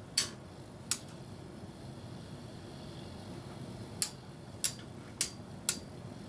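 Two Beyblade spinning tops, Samurai Ifrit and Pirate Orochi, whirring as they spin in a clear plastic stadium. Six sharp clacks sound as the tops knock together, two in the first second and four more from about four seconds in.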